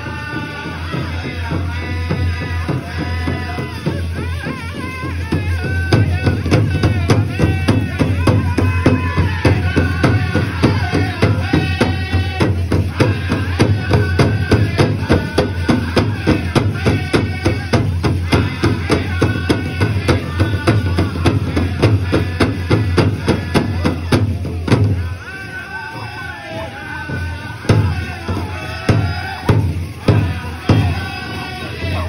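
Pow wow drum group singing a side-step song while beating a large shared hand drum in a fast, steady beat. About 25 s in the steady drumming stops while the voices carry on, and a few single hard drum strokes follow near the end.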